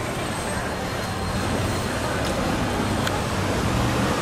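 Steady road-traffic noise from cars along a busy curbside.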